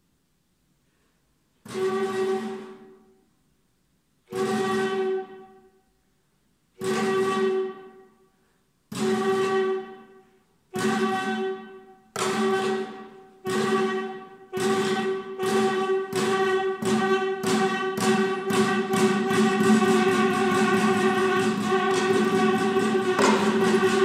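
Saxophone neck blown through a tube, with a prepared guitar, playing repeated pitched notes, each fading away. After a short silence the notes come about every two and a half seconds, then quicken until they merge into a continuous pulsing stream near the end.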